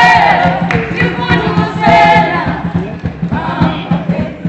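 A group of voices singing together, choir-like, with held notes over a steady low hum; the singing fades near the end.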